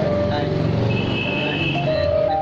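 Indistinct chatter of several people talking over one another, with background music holding a few steady notes.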